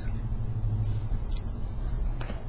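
A steady low rumble with no speech, swelling slightly in the middle, and one faint tick about two-thirds of the way through.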